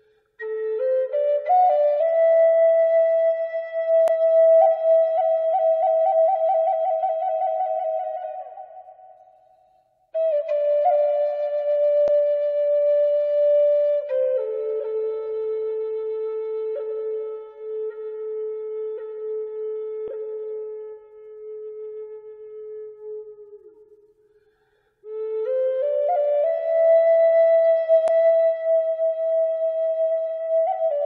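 Solo flute playing a slow melody of long held notes in three phrases, broken by short pauses about ten and twenty-five seconds in. Some of the held notes waver with vibrato.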